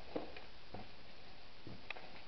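Quiet footsteps on a gritty, rubble-strewn concrete floor: a few soft steps with small crunches, over a steady faint hiss.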